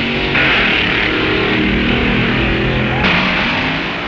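Background music, with a harsher noisy layer that comes in just after the start and cuts off about three seconds in.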